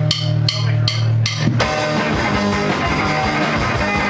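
Live rock band with drums, electric guitar and bass. A held low note runs under four evenly spaced sharp clicks that count the song in, then the full band comes in together about one and a half seconds in.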